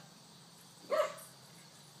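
A dog barks once, a short yip about a second in.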